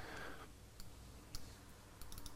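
Two faint clicks of a computer mouse, about half a second apart, over quiet room tone.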